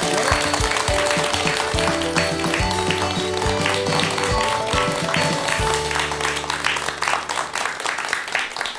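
Studio audience clapping steadily under instrumental music with held notes and a low sustained chord.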